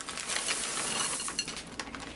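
Semi-sweet chocolate chips pouring from a bag into a glass bowl: a dense run of small clicks and clinks as they rattle onto the glass and the nuts, ending just before speech resumes.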